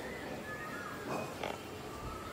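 Faint, short chirping calls of small birds in the background, with two brief rustles a little past halfway through.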